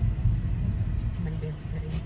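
Low rumble inside a car's cabin, with a faint steady low hum starting just over a second in.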